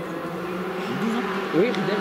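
Distant Skoda Fabia R5 rally car's turbocharged four-cylinder engine, a steady buzz growing a little louder near the end as the car approaches.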